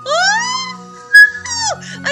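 Cartoon sound effects over background music: a long high-pitched rising glide, a short bright tone about a second in, then a quick falling glide.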